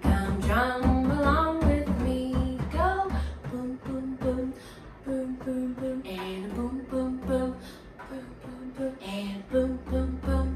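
Hand drums struck with the palms under women singing a 'hey-o' call-and-response chant. Drumming and singing are loud for about the first three seconds, then drop to quiet playing with short repeated sung notes.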